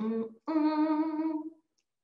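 A person's voice: a short syllable, then a long hesitation sound held on one steady pitch for about a second, like a hummed "euh".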